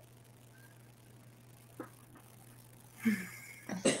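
A lull in a conversation with only a faint, steady low electrical hum. Near the end a woman laughs and starts to speak.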